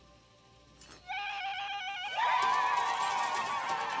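High, warbling war cries. One trilling cry starts about a second in, and many voices join and grow louder about two seconds in.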